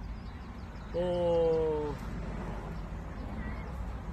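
A man's voice holding a drawn-out 'oh' for about a second, starting about a second in, its pitch sinking slightly. Underneath is a steady low background rumble.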